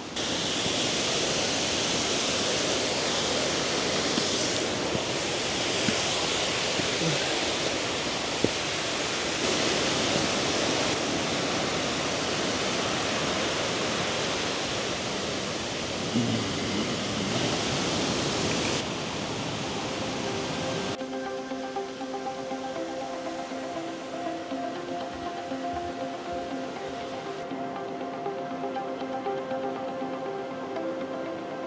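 Steady rushing roar of a waterfall running strong after heavy rain. About two-thirds of the way through, the roar fades out and background music of held chords takes over.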